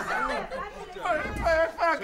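Voices: excited cries and chatter, with loud pitched exclamations in the second half.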